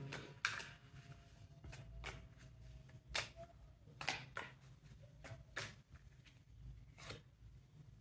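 A deck of oracle cards being shuffled by hand, heard as a faint string of about a dozen soft, irregular flicks and taps as cards slide between the hands.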